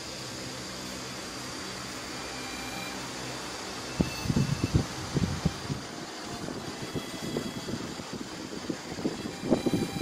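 Steady hum and hiss of background noise, joined about four seconds in by irregular low bumps and rumbles.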